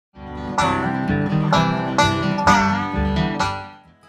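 Short acoustic string-band instrumental of plucked notes ringing in a quick run, fading out near the end.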